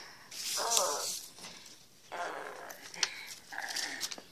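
A child's voice making monster roar noises in three short bursts: about half a second in, about two seconds in, and near the end.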